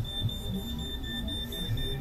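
Smoke detector sounding its high-pitched electronic alarm tone, pulsing rapidly and without a break, over quiet background music.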